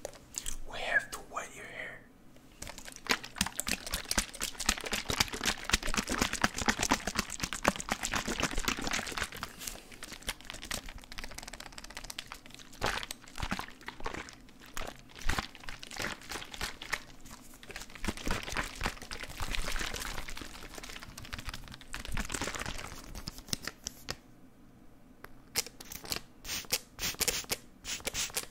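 Close-miked ASMR handling sounds: dense, rapid crackling, rustling and tapping from hands and objects worked right at the microphone. The sound thins out and goes nearly quiet in the last couple of seconds.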